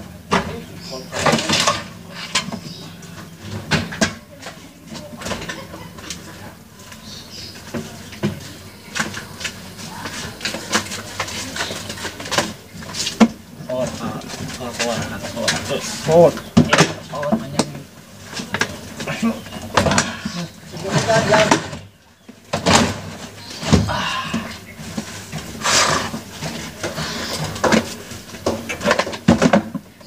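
Indistinct voices talking throughout, with scattered sharp knocks and clatter as equipment cases are handled.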